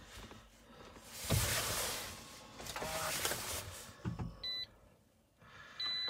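2014 Toyota RAV4 EV powering up: a whooshing, whirring run as its systems come on, a few clicks, then short electronic beeps near the end as the car goes into Ready.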